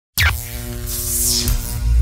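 Electronic logo intro sting: a sudden hit with a quick falling sweep, then a high whoosh that sinks away, over a deep pulsing bass drone.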